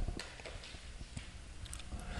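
Faint, scattered taps and rubbing of chalk and a board eraser on a chalkboard.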